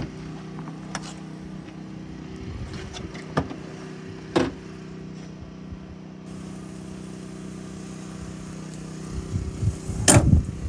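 Car engine idling with a steady hum. A knock comes at the start and a louder clunk about four seconds in, as the tailgate is opened.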